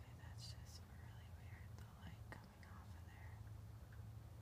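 A person whispering faintly over a steady low hum, with a few hissy sibilant sounds about half a second in.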